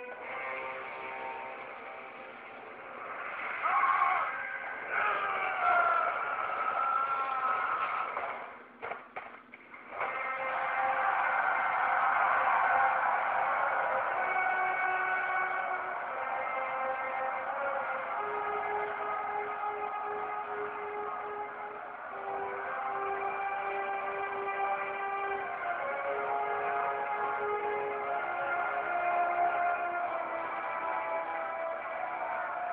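Movie soundtrack: a few seconds of loud, wavering cries give way, after a short dip about ten seconds in, to film score music with long held notes that step in pitch. The sound is dull, with no treble.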